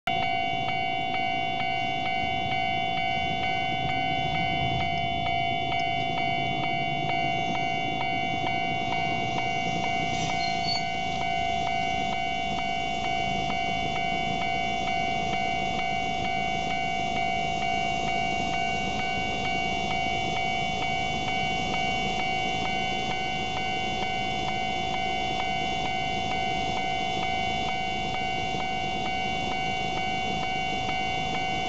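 Electronic level-crossing warning bell ringing on and on at an even rate while the crossing is closed for an approaching train.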